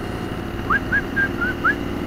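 BMW R1200RT's boxer-twin engine running steadily under way, with road and wind noise. Over it, starting just under a second in, a run of short, high whistled notes, some sliding upward.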